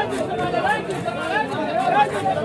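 Several people talking over one another in background chatter, with faint, quick scraping strokes of a knife scaling a large carp.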